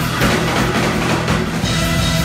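Live rock band playing: a Hammond organ holds a steady chord under busy drums and cymbals, in the closing bars of the piece.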